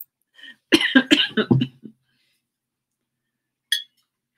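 A woman coughing four or five times in a quick run about a second in, the last ending in a short hum, after laughing. A brief click near the end.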